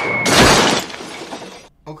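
Film sound effect of a heavy stage light falling from the sky: a high whistle, sinking slightly in pitch, ends about a third of a second in with a loud smash of breaking glass and metal on the street, which dies away over about a second.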